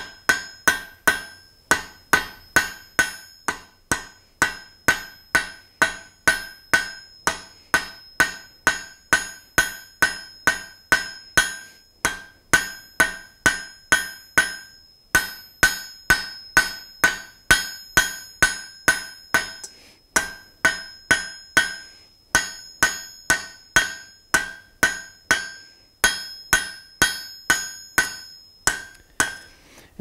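Hand hammer striking hot steel on an anvil, about two to three blows a second in runs with brief pauses, each blow leaving the anvil ringing. The smith is forge-welding a folded-over bar end and drawing it out to a point.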